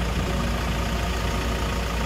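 Vehicle engine idling: a steady low rumble.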